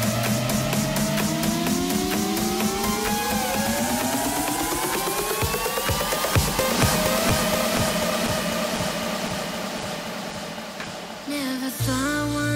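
Electronic dance music from a DJ mix: with the bass dropped out, rising synth sweeps climb over repeated drum hits in a build-up, then the music gradually fades down over the last few seconds. Just before the end, a new track comes in with heavy bass.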